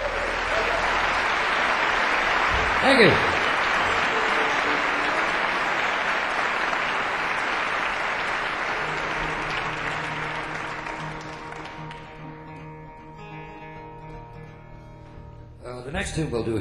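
Concert audience applauding and cheering at the end of a song. A single loud shout falls in pitch about three seconds in. The applause dies away after about twelve seconds, leaving a few quiet sustained guitar notes.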